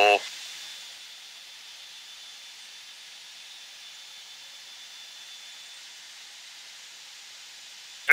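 Low, steady hiss on the cockpit intercom of a Blue Angels F/A-18 jet, with a faint thin high whistle that fades out about six seconds in. A spoken word ends just as the hiss begins.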